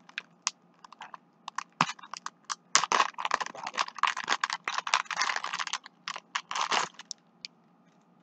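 Small plastic packaging of jewelry jump rings being handled and opened: rapid, irregular clicking and crackling, thickest through the middle few seconds.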